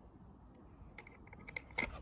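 Faint, light clicks and taps of a small screw and the plastic battery tray being handled, several in quick succession in the second half with a sharper click near the end.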